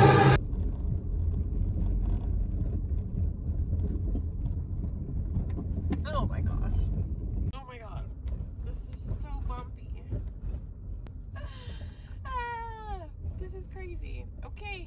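Car road noise heard from inside the cabin while driving: a steady low rumble that drops noticeably about halfway through. Over the second half come a woman's wordless vocal sounds, sliding down in pitch.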